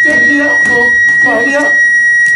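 Defibrillator sounding a steady, unbroken high-pitched tone after being charged to 200 joules, the signal that it is charged and ready to shock.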